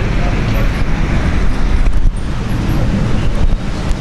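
Microphone handling noise: an uneven, loud rumbling and rustling as a clip-on microphone is fitted to clothing, over faint background voices.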